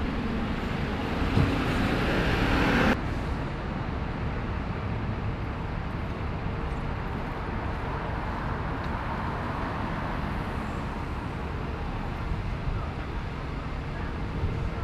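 Steady street traffic noise with a stationary double-decker bus idling. The sound is louder for the first three seconds, then drops suddenly to a quieter, even level.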